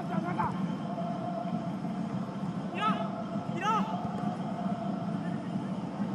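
Live football match ambience in a sparsely filled stadium: a steady hum and background noise, with a few short shouted calls from the pitch, two of them around the middle.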